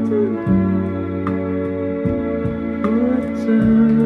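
Recorded music played through a Sansui G-9000 stereo receiver: held chords over a bass line that changes every second or so, with a few sliding notes.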